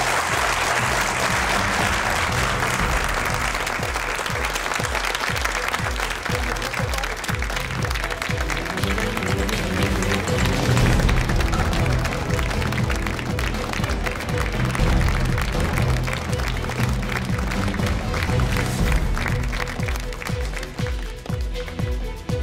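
Studio audience applauding over the show's closing theme music, which has a steady beat. The clapping is heaviest at first and thins out after several seconds while the music carries on.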